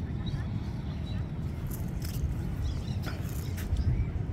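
Wind rumbling on the microphone, with faint distant voices and a few faint clicks in the second half.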